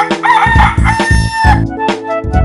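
A rooster crowing a long cock-a-doodle-doo that ends about three-quarters of the way through, over music with a steady beat.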